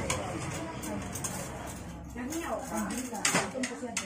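Plates and serving utensils clinking as food is dished out at a table, over people talking; a sharper clink comes near the end.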